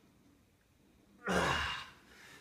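A man's loud, breathy sigh of exertion, one voiced exhale falling in pitch, about a second in, as he finishes a long set of push-ups.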